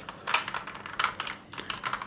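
A string of small, irregular hard-plastic clicks as the parts of a Kenner M.A.S.K. Switchblade toy are moved and snapped while it is converted from helicopter mode back to attack mode.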